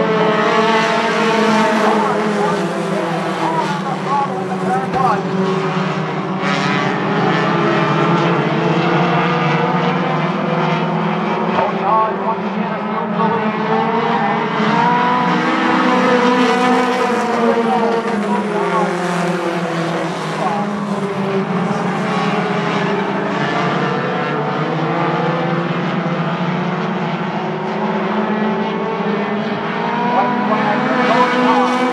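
A pack of compact stock cars racing together, several engines running at once at different pitches and rising and falling as the drivers get on and off the throttle through the turns.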